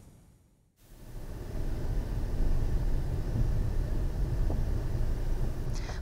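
Outdoor location sound: a steady low rumble with a faint hiss above it, starting about a second in after a brief silence.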